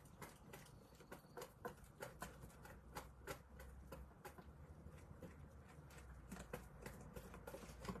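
Faint, irregular crackling and small clicks of a heat-transfer film being peeled up off a metal tray.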